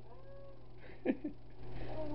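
A brief, faint, high-pitched cry that rises and falls in pitch, followed about a second in by a sharp click.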